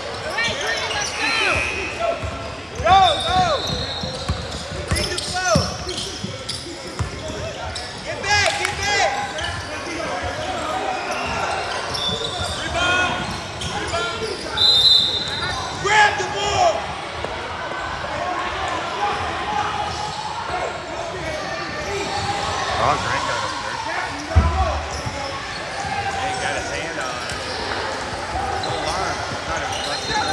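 Basketball game in a large, echoing gym: sneakers squeaking on the hardwood court and a basketball bouncing, over background chatter and shouts from players and spectators. One heavy thump stands out about three-quarters of the way through.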